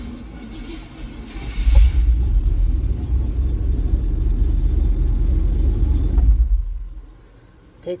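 1990 Chevy pickup engine hotwired: after a short crank it catches about a second and a half in and runs with a steady low rumble for about five seconds, then dies away near the end as the pink ignition wire is pulled off the red battery feed.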